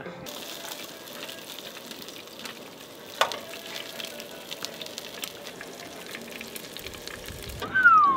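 Sausages sizzling and crackling as they fry in a pan on a camp stove. A sharper click comes about three seconds in, and a short falling tone comes right at the end.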